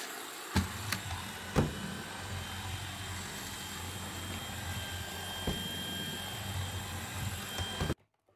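Cordless stick vacuum running steadily with a thin high whine, cutting off suddenly at the end. A few knocks come from its floor head as it is pushed about the floor, the loudest about one and a half seconds in.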